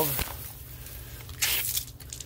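Water-pressure relief valve spitting water: a short hiss about one and a half seconds in. The valve is leaking, squirting water again and again.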